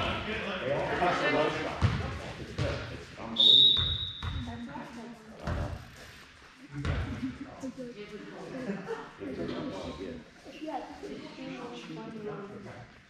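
Basketball bouncing on a hardwood gym floor, with a single sharp referee's whistle blast about three and a half seconds in, held for about a second. Scattered voices carry in the large, echoing hall.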